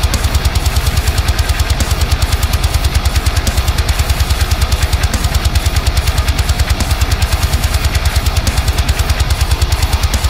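Low-tuned 8-string electric guitar through a high-gain amp simulator, playing rapid palm-muted chugs locked with fast double-kick drums in a full metal mix. It is one even, machine-like pulse that holds steady throughout.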